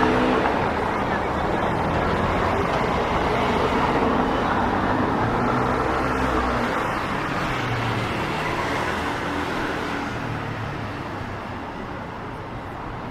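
Road traffic on a cobbled city street, with cars passing close by. The noise eases off over the last few seconds.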